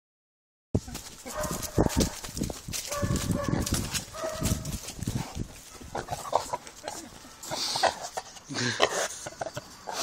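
Vietnamese pot-bellied pig grunting and squealing close to the microphone, in a run of short pitched calls during the first half.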